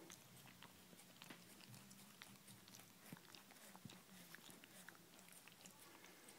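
A husky chewing and licking at a peanut-butter-filled bone held between its paws: faint, irregular wet clicks and smacks, several a second.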